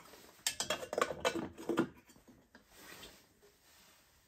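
Metal cookware being handled on a camping spirit stove: a quick run of clinks and clatters lasting about a second and a half as a small kettle is picked up and set onto the burner's aluminium windshield, then quieter.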